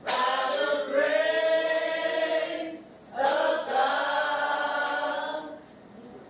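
Singing in long, slowly held notes: two sung phrases with a short gap about three seconds in, fading out near the end.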